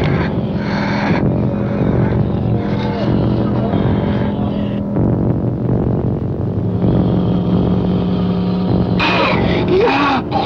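Film soundtrack: low, held music tones over a steady rushing noise, the tones breaking off about halfway and coming back a couple of seconds later. A short, wavering, moan-like sound comes just before the end.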